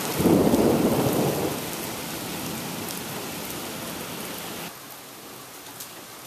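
Thunder rumbling over steady rain for the first second and a half, then rain alone. The rain drops suddenly in level a little before five seconds in.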